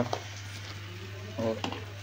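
Plastic food packets crinkling in a hand in short bursts, over a steady hiss from a lit gas stove burner.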